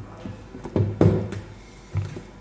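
Plastic food storage containers knocking and bumping against a wooden tabletop as they are handled: a handful of hollow knocks, the loudest two close together about a second in.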